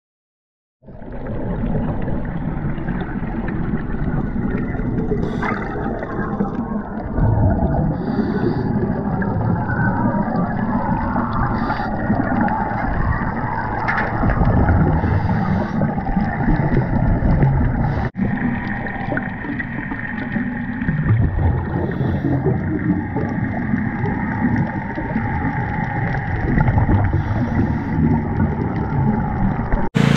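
Underwater sound picked up by a submerged camera: a dense, muffled wash of water noise with gurgling, broken by a brief cut about two-thirds of the way through.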